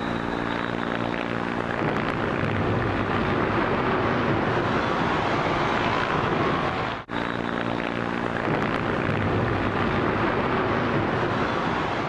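Steady loud roar on archival news footage, with a low engine-like hum for its first couple of seconds. The clip breaks off briefly about seven seconds in and starts again, hum and roar repeating.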